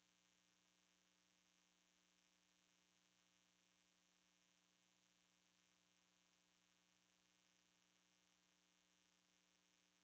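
Near silence: a faint steady electrical hum over a low hiss.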